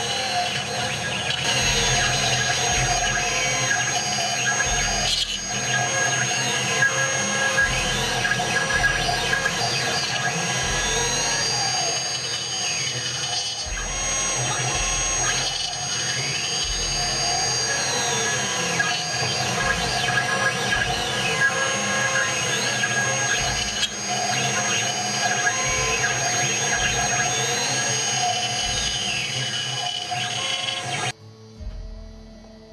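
CNC router carving a wooden bowl: a steady high spindle whine, with the stepper motors' whine gliding up and down in pitch over and over as the cutter sweeps back and forth.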